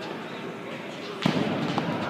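A heavy shot put landing on an indoor fieldhouse floor with a single loud thud about a second and a quarter in, the impact ringing in the large hall.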